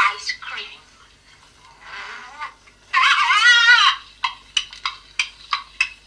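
Toy talking story-set record playing back a tinny, thin-sounding recorded voice with largely unintelligible words. About three seconds in comes a loud, drawn-out wavering vocal sound lasting about a second, followed by a string of short, clipped sounds.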